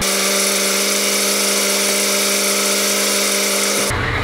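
A steady, even electric buzz with a stack of overtones and no low end, starting abruptly and cutting off just before the end.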